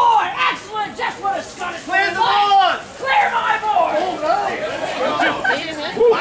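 People talking and calling out, with crowd chatter.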